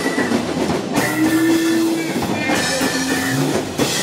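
Live band playing an instrumental passage: drums, electric and acoustic guitars and keyboard, with sustained held notes over the beat.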